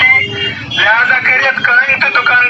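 A voice announcement blaring from a horn loudspeaker mounted on a municipal garbage truck, with a short break just under a second in, over the truck's engine running.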